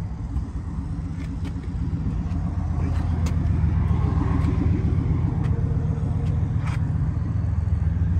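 A motor vehicle's engine idling with a steady low hum, growing slightly louder about two seconds in, with a few faint clicks over it.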